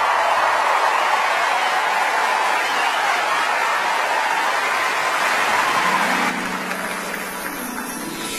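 Large concert audience applauding. The applause dies down about six seconds in, and a faint steady low note comes in underneath.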